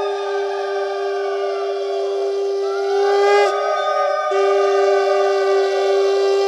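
Conch shells (shankha) blown in long overlapping notes. One steady note breaks off briefly about three and a half seconds in and then resumes, while the other notes sag in pitch and restart.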